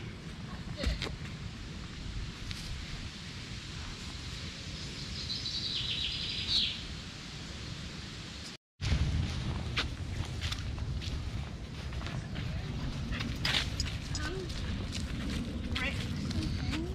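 Woodland ambience while walking a dirt footpath: a low rumble on the microphone with light footfalls, and a short burst of bird song about five seconds in. The sound cuts out completely for a moment just before nine seconds.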